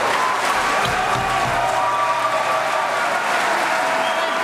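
Audience applauding, with one person clapping close by.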